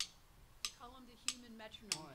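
Metronome click in a drummer's monitor mix, ticking steadily about three times every two seconds. A man's voice starts talking about halfway through.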